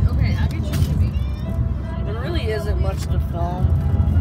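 Steady low road and engine rumble inside a moving car's cabin, with voices talking in the middle of it.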